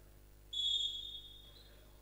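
Referee's whistle: one steady, high note about half a second in, fading out over about a second.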